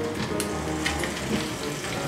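Food sizzling between the hot plates of a closed flip waffle maker: a steady hiss with a couple of light clicks, over soft background music.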